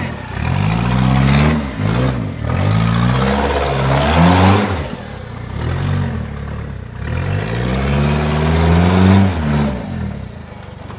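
Off-road buggy's engine revving in repeated bursts under load on a steep rocky climb, its pitch rising and falling several times over the few seconds.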